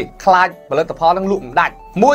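A man talking in Khmer, with music playing softly under his voice.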